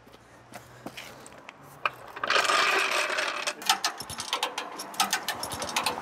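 Sonic floor jack being pulled out from under a car across wet asphalt: a loud rough scraping rattle of its wheels and frame about two seconds in, then a quick run of metal clicks and clanks.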